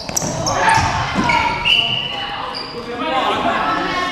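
Pickup basketball game in a gym: a basketball bouncing on the court, short high sneaker squeaks, and players calling out, all echoing in the hall.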